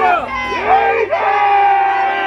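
Several voices shouting together in unison in short rising and falling calls, then one long held shout.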